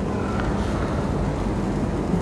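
Steady low hum and hiss with no speech: the background noise of a room picked up through a microphone and sound system.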